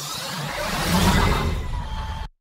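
Sound effect of a TV station logo ident: a whoosh that swells to a peak about a second in and then fades, with a faint gliding tone in it.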